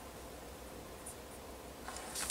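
Faint handling noises from a small object being worked in the hands, a few light clicks and scratches over quiet room tone.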